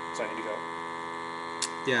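Steady electrical hum with a row of evenly spaced overtones, unchanging in level, and a faint short click near the end.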